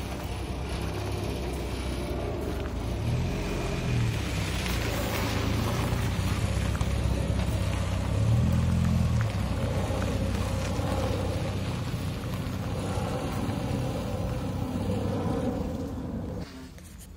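MGA roadster's four-cylinder engine running as the car pulls away at low speed, picking up revs twice, about three seconds in and again, louder, about eight seconds in.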